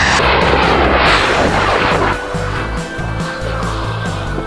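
Small firework rocket burning with a loud hiss as it drives a toy jeep across sand, dying away about two seconds in; background music plays throughout.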